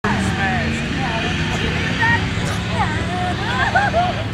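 Lifted pickup truck's engine running steadily in a mud pit, its pitch level and not revving, with people's voices talking over it.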